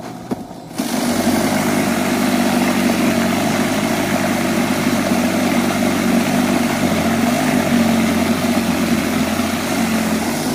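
Toro 60V cordless power shovel's brushless motor and rotor running steadily while churning through and throwing heavy slushy snow, coming up to full speed under a second in.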